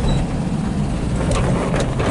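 Cabin noise inside a moving 1977 Volkswagen Type 2 campervan: its rear-mounted air-cooled flat-four engine drones steadily under road and wind noise. A few short rattles come past the middle.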